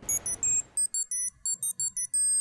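Electronic sound-logo jingle: about ten short, high-pitched bleeps in quick, uneven succession, like a burst of computer chirps.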